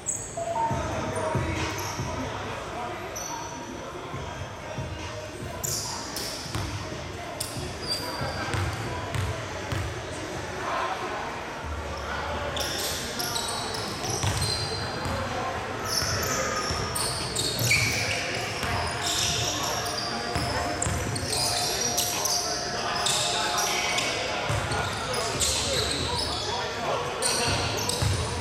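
Basketball being bounced on a hardwood court during live play, with sneakers squeaking and players' voices, echoing in a large gym.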